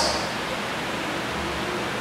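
Steady hiss of room noise in a pause between spoken phrases, with no distinct event.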